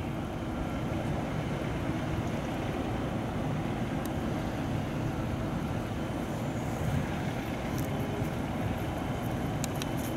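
Steady low rumble of vehicle traffic noise, with a few faint clicks.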